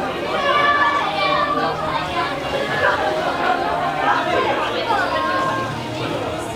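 Crowd chatter: many voices talking over one another in a steady hubbub.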